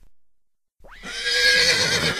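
Silence for almost a second, then a horse whinnying once: a long call whose pitch wavers.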